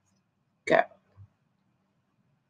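A woman says one short word, then near silence with a faint steady low hum.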